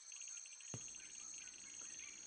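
Faint insect chirping, crickets or similar, in a fast pulsed trill over a steady high buzz. A single soft click sounds about three-quarters of a second in.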